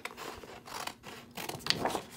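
Scissors cutting along a sheet of printed paper, several snips in a row, the sharpest and loudest a little before the end.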